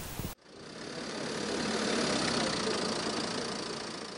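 Vehicle engine running, heard as an even noise without a clear pitch that swells to its loudest about two seconds in and then fades away.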